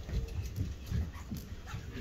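People sitting down on folding chairs: scattered low thumps and shuffling, with a few short creaks or squeaks from the chairs.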